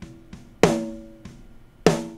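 Rock snare drum track played back unprocessed, with the EQ plugin bypassed: two hard snare hits about a second and a quarter apart, each leaving a ringing tone that fades out, and softer hits between them. This is the dry snare that the engineer hears as flat, muddy and pongy, with a good amount of ring.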